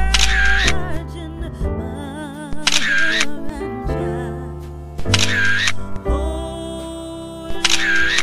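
Background music with a camera-shutter sound effect that comes four times, about every two and a half seconds.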